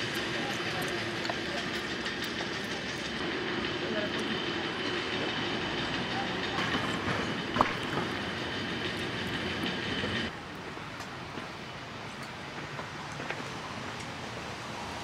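Steady outdoor street noise, a continuous mechanical rumble with a faint high hum. There is one sharp click a little past halfway, and the noise drops abruptly to a quieter level about ten seconds in.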